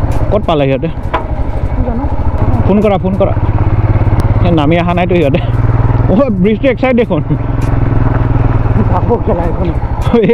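Royal Enfield Himalayan 450's single-cylinder engine running at a steady cruise, heard from the rider's seat. A man's voice comes and goes over it several times.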